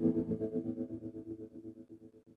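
Outro music ending on a held chord with a rapid pulsing, fading out to silence.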